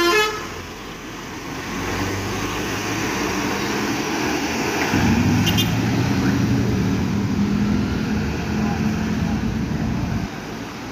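Mercedes-Benz OH 1626 NG coach's diesel engine pulling away, a low steady drone that grows fuller about five seconds in. At the very start, the last notes of its melodic multi-tone horn stop.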